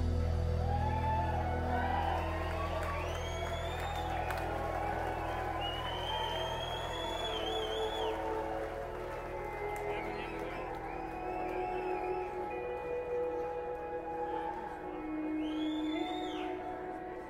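Audience recording of a live rock band: a low final chord dies away in the first couple of seconds while the crowd cheers, whoops and whistles. Steady held keyboard tones carry on underneath.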